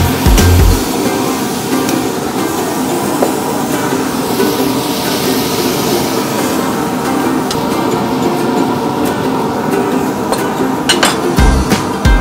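Background music; its heavy bass drops out after the first second and comes back near the end.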